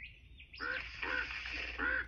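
Bird-like squawking calls heard through a TV speaker. A short high chirp comes first, then three squawks start about half a second in, near the middle and near the end.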